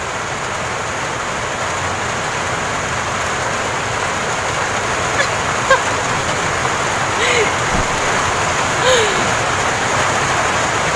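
Steady rushing noise throughout, with a few faint clicks a little after halfway and two short, squeaky vocal sounds near the end.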